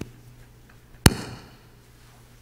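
A single sharp knock or bang about a second in, with a short ringing decay, over faint steady room hum.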